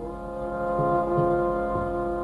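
Carnatic violin music: the violin holds and bends a long note over a steady drone. It grows louder about half a second in, with a few soft low strokes beneath.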